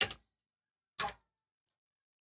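Two short clicks about a second apart, a computer mouse clicking.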